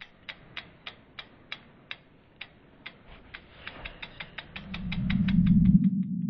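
Sound effects for an animated logo sting: a run of sharp, mechanical ticks that start at about three a second and speed up steadily. A low hum swells in under the ticks in the last second and a half and is loudest near the end.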